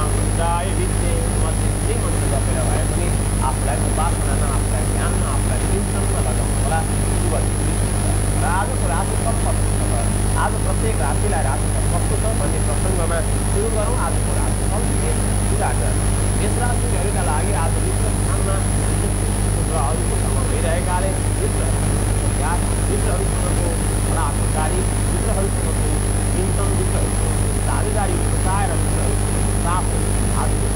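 A man talking over a loud, steady low hum that runs unbroken, with a faint steady high whine above it.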